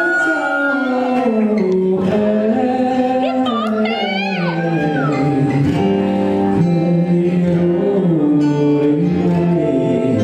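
Live acoustic band music: a male vocalist singing over strummed acoustic guitar, with a wooden flute holding a long high note near the start and playing a run of curling, ornamented phrases a few seconds in.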